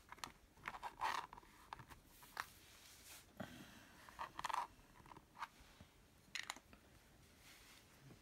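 VersaColor ink pad being dabbed by hand around the edges of a clear stamp: an irregular series of faint short scuffs and taps, the loudest about a second in and again about four and a half seconds in.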